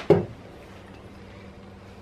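A short dull thud right at the start, then a steady low hum.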